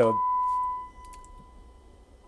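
A steady sine-wave test tone coming through a Marantz 3800 preamplifier. It is loud at first, then drops away within about a second as the volume is turned down, leaving a faint steady residual tone: signal bleed-through with the volume at zero. A few light clicks come as it drops.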